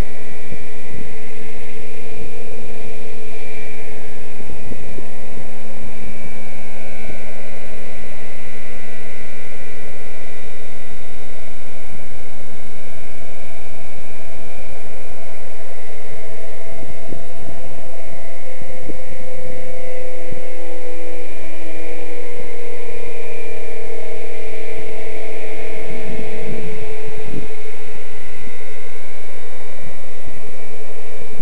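Scale MD 369 RC helicopter in flight, its motor and rotor giving a steady whine and hum whose pitch shifts a little about two-thirds of the way through as it manoeuvres. Irregular low thumps and rumble, strongest near the end, run underneath.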